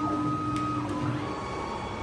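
Automatic heavy-duty cable cutting and stripping machine running: a steady motor whine that stops about a second in, with a couple of sharp clicks and a low mechanical rumble underneath.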